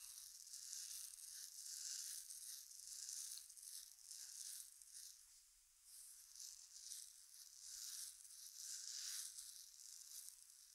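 Hands massaging oiled skin at the back of the neck and hairline: a faint soft rubbing and hair rustle that swells and fades with each stroke, about once a second.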